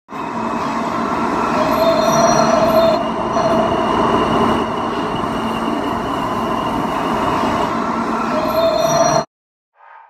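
New York City subway train running along a station platform: a steady rail rumble with high ringing tones from the wheels that swell and fade several times. The sound cuts off abruptly a little after nine seconds.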